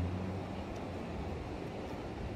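Steady beach ambience of wind and surf: an even hiss over a low rumble that is strongest at the start.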